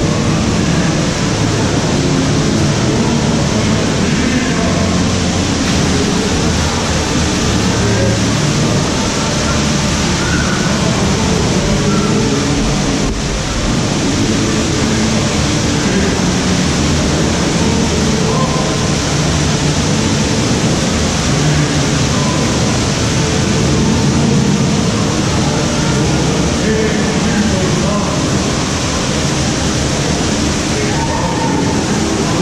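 Steady rush of water in a boat dark ride's channel and cascades, a constant loud hiss with faint snatches of voices underneath.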